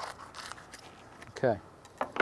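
Fillet knife slicing through the skin and scales of a striped bass near the tail as the fillet comes free, a few short scraping crackles in the first half second.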